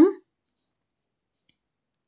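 The end of a woman's word at the very start, then near silence with two faint ticks, one about a second and a half in and one near the end.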